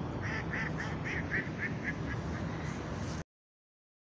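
A duck quacking in a quick series of about nine quacks, roughly four a second, fading as it goes, over a steady low background rumble. The sound cuts off suddenly about three seconds in.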